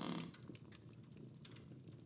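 Quiet room tone with a few faint, light clicks, just after the end of a spoken line.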